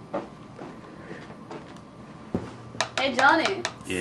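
Quiet room background with a faint knock, then a person's voice coming in about three seconds in.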